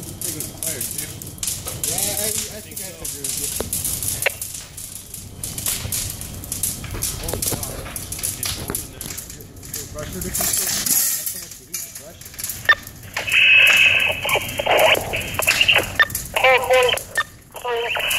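Building fire crackling with dense irregular pops as flames and smoke vent through a failed window. Band-limited fire-ground radio voices cut in for a few seconds near the end.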